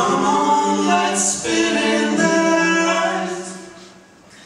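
Voices singing unaccompanied in a group, holding long notes that shift pitch partway through, then dying away near the end.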